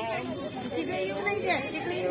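Several people chattering nearby, their voices overlapping with no words standing out.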